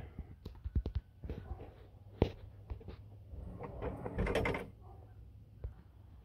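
Scattered light clicks and knocks of metal parts being handled as a prop is set under a raised pickup hood to hold it open, with one sharp knock about two seconds in and a brief scrape a little past the middle.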